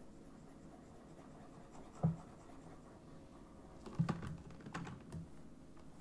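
Faint clicks and light scratching from computer input during digital sculpting, with a few louder taps about two seconds in and around four to five seconds in, over a faint steady hum.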